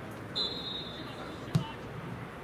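Referee's whistle: one steady, high blast of a little over a second, followed straight away by a single sharp thud of a boot striking the football as the set piece is taken. Faint voices in the background.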